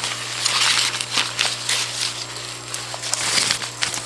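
Crumpled newspaper packing rustling and crackling as it is handled in a cardboard shipping box.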